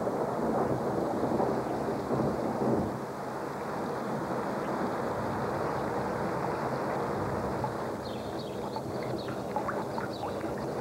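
Steady rainfall with a rumble of thunder, heaviest in the first three seconds and then settling to an even fall, with a few sharp drips near the end.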